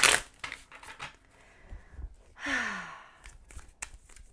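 Tarot cards being shuffled and handled: a sharp rustle at the start, then scattered clicks and riffles of the cards. About two and a half seconds in comes a breathy sigh that falls in pitch.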